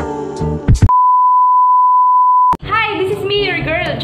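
The end of upbeat intro music, then an edited-in beep: a single steady high tone lasting under two seconds that cuts off abruptly, followed by a woman starting to talk.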